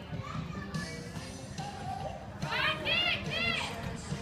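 Background voices, then a high-pitched voice calling out three quick rising-and-falling whoops about two and a half seconds in.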